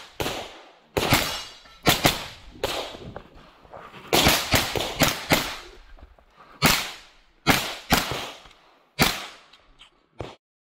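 9mm blowback pistol-caliber carbine firing rapid shots, about eighteen in all, in quick pairs and strings of up to six, with pauses of a second or so between groups. Each shot has a sharp crack and a short echo tail.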